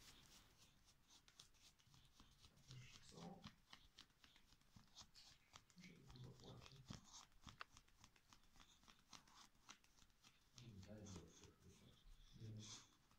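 Faint, irregular scratching and rustling of a boxer dog rubbing and scratching its face against a shaggy rug.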